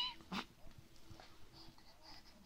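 A baby on hands and knees making a short straining grunt about a third of a second in, just after a squeal ends. After that come only faint, soft breaths.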